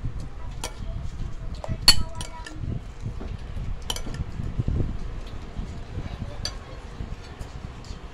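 Utensils and hands clinking against ceramic plates and bowls during a meal: a few scattered sharp clinks, the loudest about two seconds in, over a low rumble of handling.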